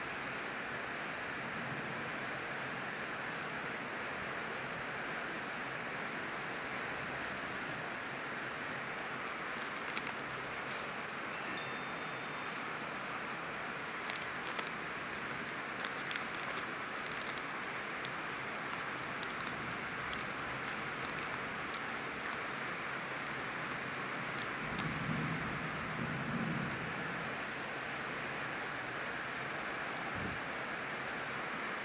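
Steady background hiss, with a scatter of light, sharp clicks and ticks in the middle and a brief low rumble near the end.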